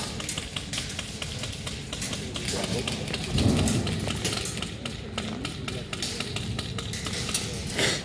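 Airsoft guns firing: many sharp clicks, often in quick runs, with a louder low rumble about three and a half seconds in.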